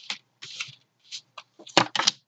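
A tarot deck being shuffled and handled: papery rustling and sliding of cards, then a few sharp taps near the end.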